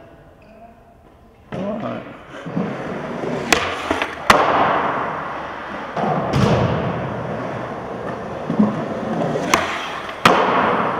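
Skateboard wheels rolling on concrete ramps, a rough, continuous rumble that starts about a second and a half in, with sharp clacks of the board hitting the concrete about three and a half and four seconds in and again near the end.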